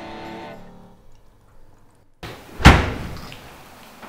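A guitar chord rings on and fades out over the first second, and a short near-silent gap follows. About two and a half seconds in comes a single loud thump with a brief decaying tail.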